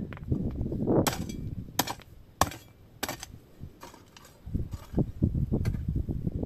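A series of sharp, short knocks from hand work at the base of a wooden tree stake in stony soil, about four in quick succession and one more near the end. Low gusts of wind buffet the microphone in the second half.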